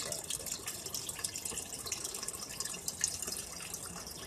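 Water from an aquarium filter's return hose pouring into a tub of water, a steady splashing trickle.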